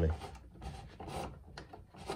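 Rack-and-pinion fence rails of a DeWalt DWE7485 table saw sliding along, a rubbing sound with a couple of short scrapes.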